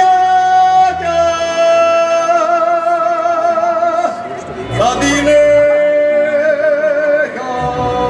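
A man singing a Slovácko verbuňk song solo into a microphone, in two long phrases of held notes with a wavering vibrato and a short breath between them.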